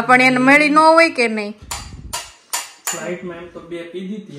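A drawn-out vocal sound, like a laugh or exclamation, for about the first second. Then a steel spoon clinks and scrapes against small steel bowls and pots in a run of sharp, separate clinks.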